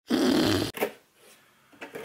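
A short, loud rasping noise, under a second long, that cuts off suddenly and is followed by a brief second burst. Near the end come faint clicks and rustling of cardboard being handled.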